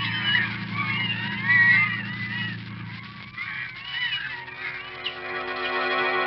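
Sound effect of a flock of gulls crying: many short, overlapping, arching calls. A low steady drone runs under them, and organ music comes in about four seconds in as the calls thin out.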